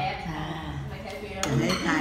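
Metal cutlery clinking against china plates and bowls as people eat, with one sharp clink about a second and a half in, under talking voices.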